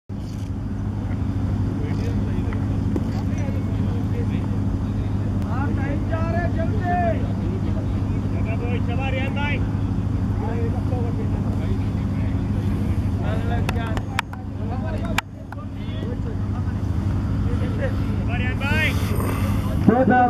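A steady low machine-like hum runs throughout, with players' voices calling out now and then on the field. Two sharp knocks come about a second apart just past the middle.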